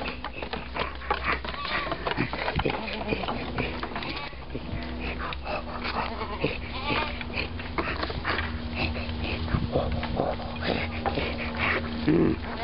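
Goats bleating, many short calls one after another across the herd, over a steady low hum.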